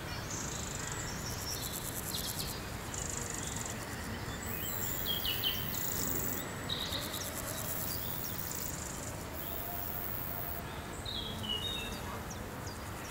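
Insects chirping in high-pitched stretches that start and stop every second or two, with short bird chirps scattered through, over a steady low background noise.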